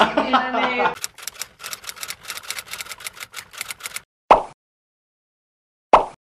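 A rapid, even run of sharp clicks, about six a second for some three seconds, typewriter-like, following a second of laughing speech; then dead silence broken by two short hits about a second and a half apart.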